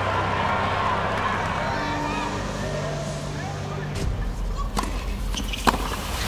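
Low sustained background music under indistinct voices, with a few sharp knocks in the last two seconds.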